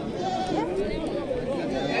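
Goats bleating over the chatter of a crowd of people.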